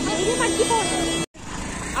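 Women's voices chattering over the steady hum of a running vehicle engine in street traffic. About a second in, the sound cuts out completely for an instant, then the voices carry on over quieter street noise.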